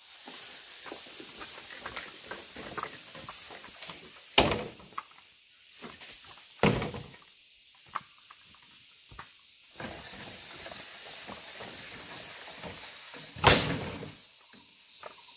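Footsteps walking through forest undergrowth, with leaves and ferns rustling and crackling at each step, and three much louder sharp knocks scattered through it. A faint steady high insect drone sits underneath.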